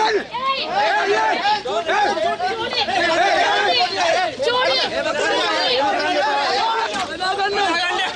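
Many voices talking over one another in a jostling crowd of protesters and police, loud and without a break.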